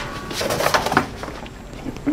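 A wooden bathroom door's lever handle being worked and the door moved on its hinges: a click, then a short creaking cluster about half a second to one second in.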